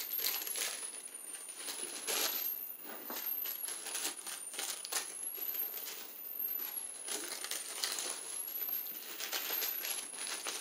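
Faint rustling and clicking of plastic wrappers and empty toiletry containers being handled and sorted. A thin, very high tone glides up and down in pitch throughout, repeating about every three seconds.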